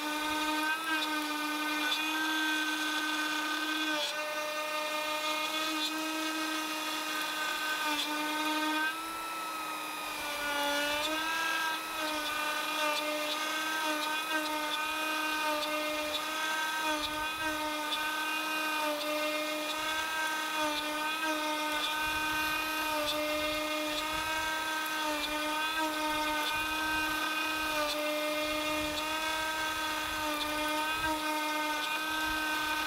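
Fox Alien trim router on a Masuter 3S desktop CNC, spinning a quarter-inch end mill as it mills a pocket in white oak. It gives a steady high whine, with a brief dip in pitch and level about ten seconds in.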